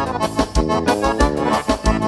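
Live gaúcho band playing a vaneira: accordion chords over a steady bass and drum beat.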